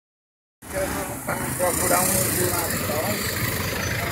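City street traffic noise, a steady rumble and hiss from passing vehicles, with indistinct voices in the background; it starts about half a second in.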